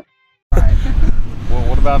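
Outdoor noise with a strong low rumble cuts in suddenly about half a second in, after a brief silence. A man's voice starts near the end.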